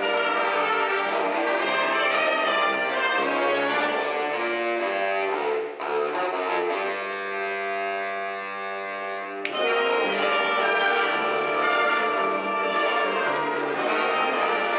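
Wind band of brass and woodwinds playing a piece together. About six seconds in the band drops to a softer held chord, then comes back in full a few seconds later.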